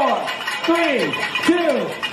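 A race-start countdown shouted aloud, one number about every three quarters of a second, each call falling in pitch.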